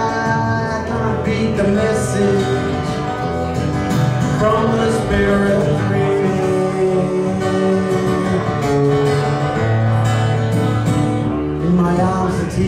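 A man singing a song to his own strummed acoustic guitar.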